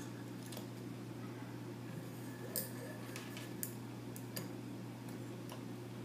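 Metal lamellar armour plates being handled, giving a few faint scattered clicks and taps as they knock against each other, over a steady low hum.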